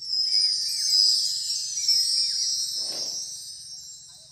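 A bright, shimmering chime sound effect that starts suddenly as the correct answer is marked and fades away over about four seconds, over light background music with small chirping notes. A short whoosh comes about three seconds in.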